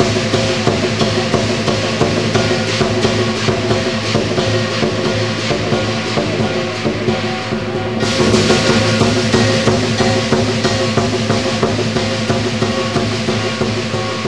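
Lion dance percussion music: rapid, continuous drum strikes with cymbals over sustained ringing tones. The sound turns abruptly brighter about eight seconds in.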